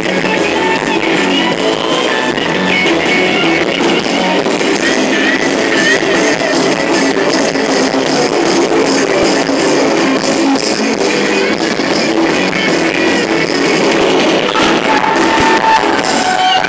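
Live gospel band playing rock-style worship music with electric guitar through a large outdoor concert sound system, picked up from out in the audience.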